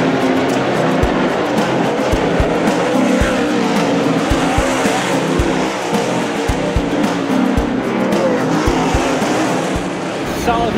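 Dirt Super Late Model race cars racing around the track, a steady engine noise, mixed with background music and scattered low thumps.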